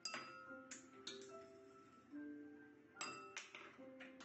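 Glassware on a table tapped with a stick: about five ringing clinks, three in the first second and two near three seconds in, over held notes of a simple tune. Faint, as from video playback.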